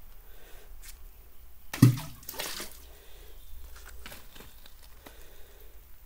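A small gorge stream trickling down a water-worn rock chute. About two seconds in there is one sharp thump followed by a short rush of noise, and a few faint knocks come later.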